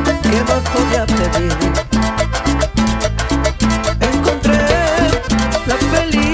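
Live cumbia band music in an instrumental passage: electric guitar over a steady bass line and regular percussion beat.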